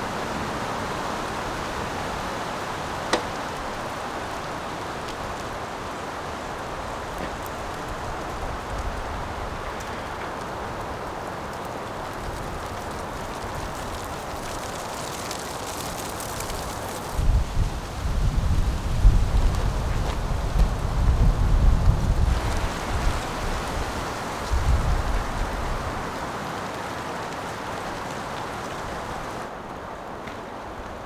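Wind through the trees, a steady rushing hiss of leaves. About halfway through, strong gusts buffet the microphone with a low rumble for several seconds, then ease off.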